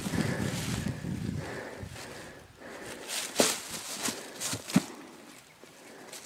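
Dry fallen leaves rustling and crunching underfoot and under a dead deer as it is heaved up by its legs. A few short knocks come in the second half.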